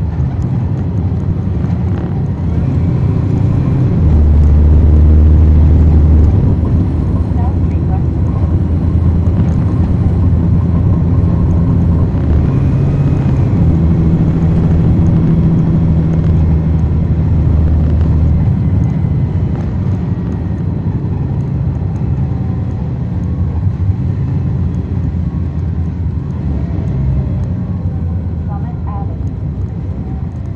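Cummins ISL9 diesel engine of a 2010 NABI 40-ft suburban transit bus, heard from the rear of the cabin, running and pulling with a deep, steady drone. The engine note rises and falls as the bus drives, loudest for about two seconds around four seconds in.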